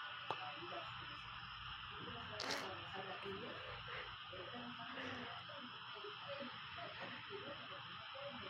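Muffled, indistinct voices under a steady hiss, with a brief burst of sharper hiss about two and a half seconds in.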